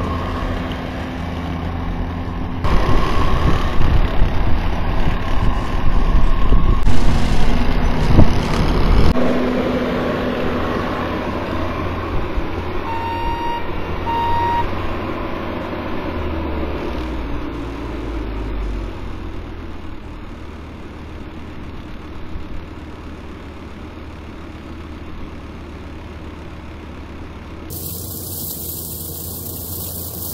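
Bobcat T650 compact track loader's diesel engine running under load while its front-mounted brush cutter mows grass and weeds. The drone is loudest in the first several seconds, then fades as the machine moves off, with two short beeps about halfway through and an abrupt change in sound near the end.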